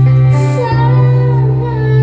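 A woman singing a slow love song into a microphone, accompanied by a small live band, with a steady low held note underneath; her vocal line comes in about two-thirds of a second in.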